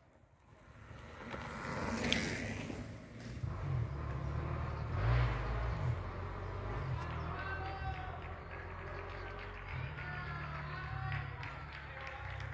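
A mountain bike passing close by on a dirt singletrack, its tyres rolling over the ground, with the sound rising to a peak about two seconds in and dying away, over a low rumble.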